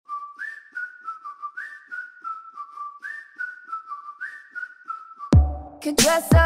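Whistled melody of a pop song intro, a single clear tone stepping between a few notes over a light ticking beat. About five seconds in, a deep bass hit lands and the full beat comes in.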